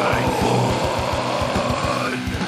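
Heavy metal band playing an instrumental passage: distorted electric guitars held over a fast, even kick-drum beat of about eight to nine strokes a second, with no vocals.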